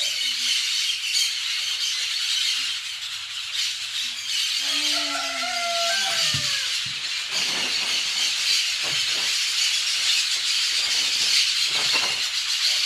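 A flock of parakeets screeching continuously in a tree, a dense high chatter. A lower tone slides downward about five seconds in.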